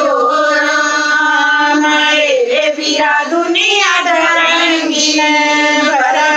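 A woman singing a Haryanvi devotional folk song (bhajan) without instruments, in long held, gliding notes.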